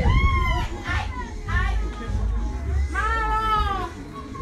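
Voices of people and children talking and calling, with a long, high rising-and-falling call at the start and another about three seconds in, over a low rumble.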